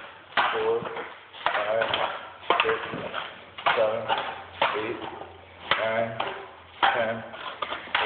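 Empty drink cans clinking one at a time as they are counted into a bag, about once a second, with a number spoken aloud after each.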